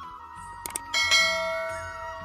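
Two quick clicks, then a bright bell chime about a second in that rings and slowly fades: the sound effects of a subscribe-button animation. They play over soft background music carrying a flute-like melody.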